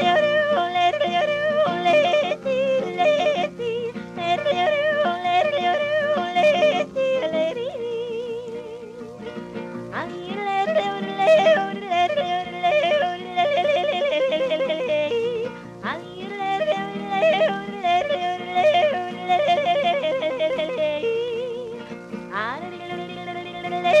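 A woman yodelling a long wordless passage over a steady guitar accompaniment, her voice flipping rapidly between low and high notes in several phrases.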